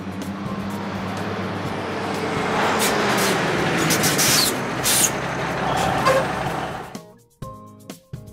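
Vehicle engine sound effect: a steady low engine hum under a rush of noise that swells toward the middle, with a couple of short bursts of hiss, then fades out about seven seconds in. Background music follows.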